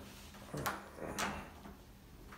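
Lever handle and latch of an interior door worked by hand: two sharp metallic clicks about half a second apart.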